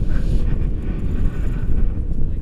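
Airflow buffeting the action camera's microphone in tandem paraglider flight: a loud, rough, gusting rumble.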